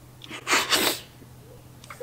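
A woman's crying sob: one short, breathy burst with two peaks, lasting under a second, muffled by her hand over her mouth.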